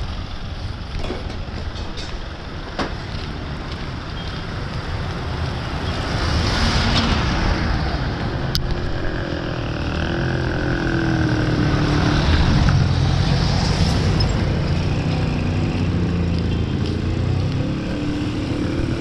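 Road traffic on a town street: vehicle engines running and passing, with a low engine rumble that grows louder about a third of the way in. A single sharp click about halfway through.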